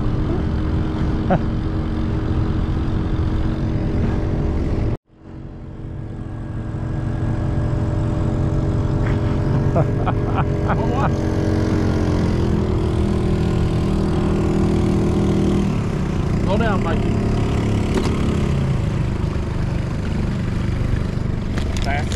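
Boat motor running steadily with the boat under way. The sound cuts out for a moment about five seconds in and comes back, and about halfway through the motor's pitch drops as it is throttled back.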